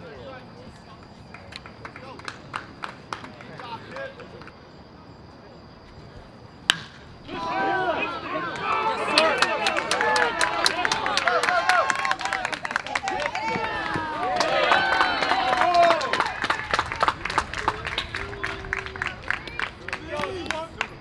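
One sharp crack of a bat hitting the ball about seven seconds in. It is followed at once by spectators and players yelling and cheering, with clapping, which stays loud to the end as the hit goes for an inside-the-park home run.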